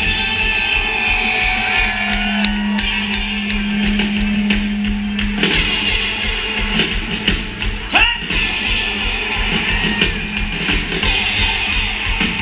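A rock band playing live through a concert PA, with guitar to the fore, heard from within a large outdoor crowd.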